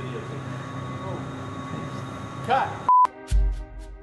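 A low, steady hum with a brief voice, then a short pure censor bleep about three seconds in. Background music with a deep bass starts straight after it.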